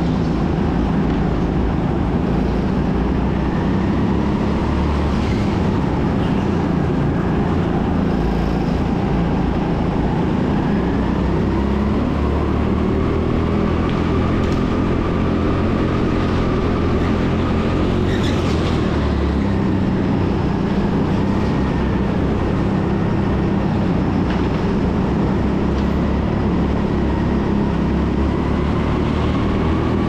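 Onboard sound of a racing go-kart's engine running steadily at speed over a continuous rush of noise. Its pitch rises and falls gently through the corners.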